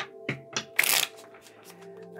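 A tarot deck being shuffled by hand: a few soft card snaps, then a short, loud flurry of cards sliding together just under a second in.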